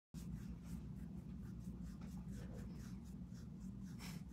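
Faint room hum with light, quick scratchy rustles, about three or four a second.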